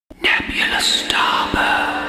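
A breathy whispered voice over a faint, held musical tone.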